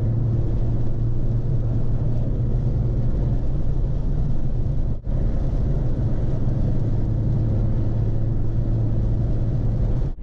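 Car cabin noise while driving: a steady low engine and road hum with air rushing in through an open side window. It briefly drops out about halfway through.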